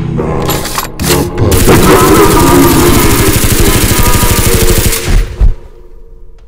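Automatic gunfire sound effect: a long, rapid volley of shots starting about a second and a half in and running for about three and a half seconds, then two heavy booms just before it cuts off.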